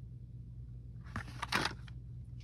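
Faint handling noises, a soft click and then a short rustle past the middle, over a steady low hum.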